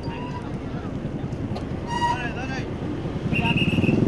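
Outdoor street noise: a low vehicle rumble with scattered distant voices about two seconds in. A short high steady tone comes at about three and a half seconds, and the rumble grows louder towards the end.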